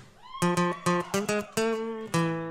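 Acoustic guitar strumming chords in a quick, syncopated rhythm, picking up about half a second in. It opens with a short rising slide in pitch.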